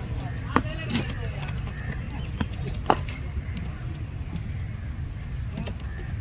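Two sharp knocks from a cricket net practice, about two seconds apart, with a few fainter clicks between, over a steady low rumble and faint voices.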